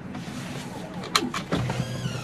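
Two quick, sharp clicks a little over a second in, then a low steady hum, inside a stopped car's cabin.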